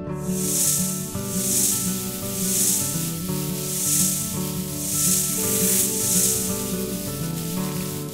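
Cartoon snake hiss sound effect, swelling and fading about once a second, over background music.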